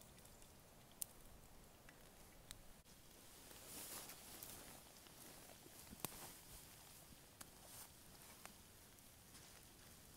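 Small wood-burning twig stove crackling quietly, with a few sharp, separate pops over a faint hiss and soft rustling about four seconds in.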